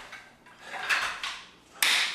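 Metal dumbbells being set down on a wooden floor: a clattering handling noise about a second in, then a sharp clunk near the end.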